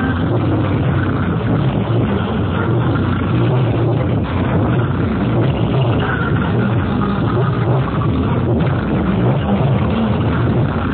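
Loud, bass-heavy electronic dance music blaring steadily from a DJ sound system's stacked speaker cabinets.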